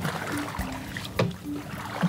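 Paddles moving a small boat through shallow water, with leaves and branches brushing past the boat and the people in it. There is one sharp knock a little past the middle.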